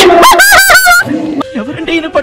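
A woman's loud, high-pitched excited shrieks with a wavering pitch. They die down about a second in, leaving quieter voices.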